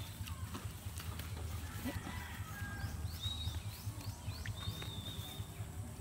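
Birds chirping in the open countryside, with short high whistled notes repeating a few times and a few quick falling chirps midway. Under them runs a steady low rumble.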